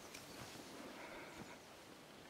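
Near silence: faint outdoor background with a few soft clicks.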